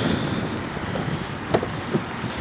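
Wind noise on the microphone outdoors, with a short click about one and a half seconds in.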